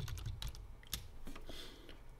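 Computer keyboard being typed on: a handful of separate, quiet keystrokes spread over two seconds as a short word is entered.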